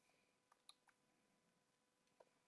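Near silence: room tone with about three faint, short clicks at the computer in the middle.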